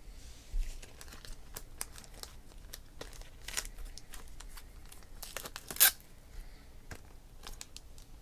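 Plastic card holders and packaging handled on a table: a run of small clicks and crinkly rustles, with a louder crackle a little before six seconds in.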